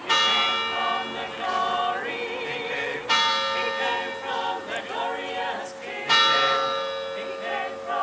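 A bell struck three times, about three seconds apart, each stroke ringing on. Voices sing alongside it.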